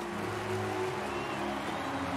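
The animated series' soundtrack: a low drone with held tones and a rumble underneath.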